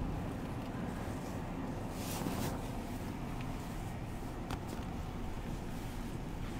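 Pickup truck driving, heard from inside the cab: a steady rumble of engine and road noise.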